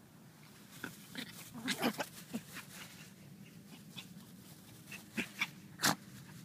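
A chihuahua making short, sharp sounds while playing: a cluster of them about a second in, then three more near the end, the last the loudest.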